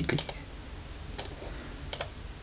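Computer mouse button clicks: a quick cluster just after the start, a faint click about midway, and a sharper click near the end.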